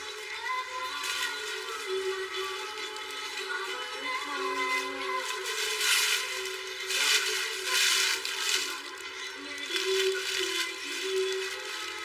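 Background music with a melody of held notes; no one is speaking.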